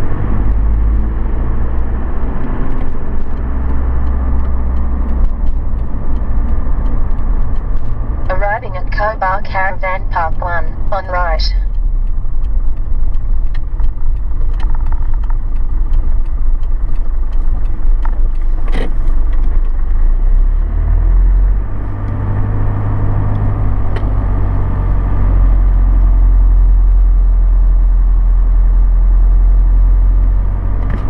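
Car driving, with a steady, heavy low rumble of engine and road noise that eases briefly around two-thirds of the way in. About eight seconds in, a high-pitched sound rises and falls rapidly for about three seconds.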